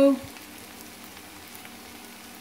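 Faint, steady sizzling of elephant foot yam curry cooking in a kadai on the stove.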